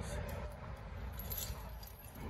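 Light metallic clinking of rigging chain and hardware over a low, steady rumble.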